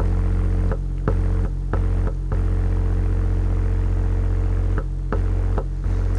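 Kicker CompR 12-inch dual voice coil subwoofer playing a steady low bass test tone with buzzy overtones. It gets louder as the second voice coil is connected, pushing it to about a thousand watts. The tone dips out briefly several times, a few around the first two seconds and again near the end, as the hand-held wire's contact on the terminal breaks and makes.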